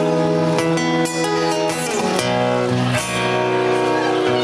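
Live band playing an instrumental passage: strummed acoustic guitars over electric bass, the chords changing about once a second.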